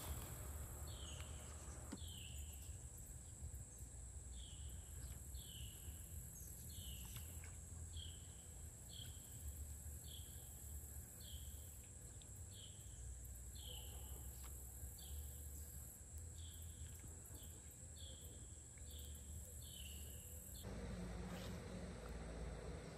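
Faint pond-side ambience: a bird repeating a short, falling call about once a second, over a steady high-pitched insect drone and a low rumble.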